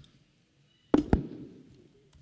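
Two sharp knocks about a quarter of a second apart, the first a little louder, each with a short low thud trailing after it.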